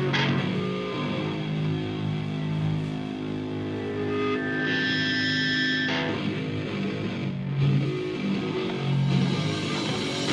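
Metal band playing live, led by electric guitar with long held notes and chords.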